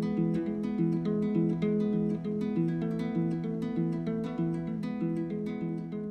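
Plucked-string music, guitar-like, fingerpicked in a quick, even pattern of single notes that continues without a break.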